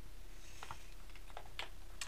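A few faint clicks of a computer mouse and keyboard over a low steady hum.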